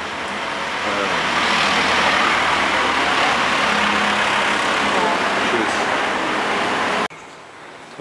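Road traffic noise from the street, a loud steady rush of passing vehicles that swells in over the first second and holds, then cuts off suddenly about seven seconds in.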